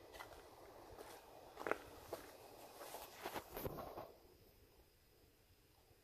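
A few faint scuffs and clicks, the loudest a little under two seconds in and a few more around three to four seconds, then only faint hiss.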